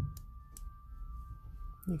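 A faint steady whistle-like tone over low hum, with two faint small clicks within the first second as the airsoft pistol slide is handled.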